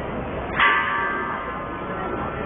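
A bell-like metal ring struck once about half a second in, sounding several clear tones together that fade out over about a second and a half, over steady background noise.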